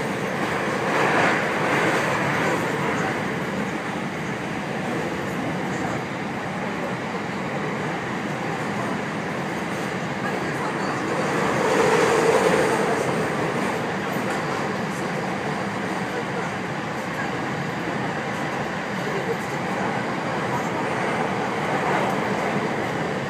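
Running noise inside a 521 series electric train: a steady rumble and rush from the moving car. It swells louder about a second in and again around twelve seconds in, the second swell carrying a brief hum.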